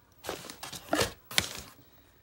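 Handling noise of a hard plastic cordless glue gun being set down into its cardboard box: three or four short scrapes and knocks of plastic against cardboard, the sharpest about one and a half seconds in.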